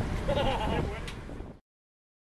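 A short, wavering voice-like call over a low rumble of wind on the microphone, then the sound cuts off abruptly about one and a half seconds in, as the recording ends.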